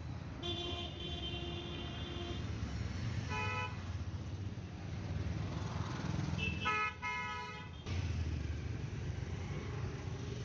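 Street traffic with vehicle horns sounding three times: a horn held about two seconds near the start, a short toot in the middle, and another lasting over a second about two-thirds through, over a steady traffic rumble.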